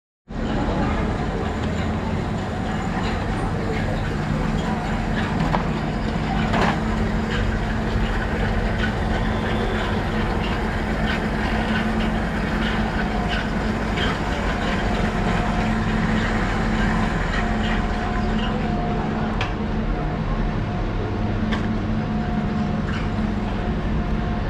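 Manual pallet jack with a loaded wooden pallet being pulled along a station platform: its wheels rolling and rattling continuously, with scattered small clicks over a steady low hum.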